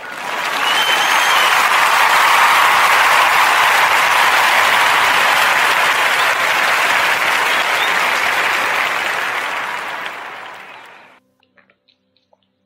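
Recorded crowd applause played as a sound effect: a large audience clapping steadily, swelling in at once, then fading out and stopping about a second before the end.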